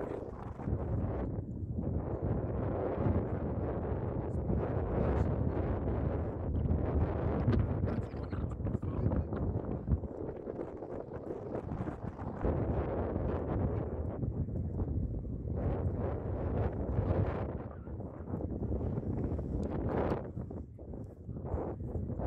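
Wind buffeting the camera's microphone: a low rumbling that swells and dips in uneven gusts.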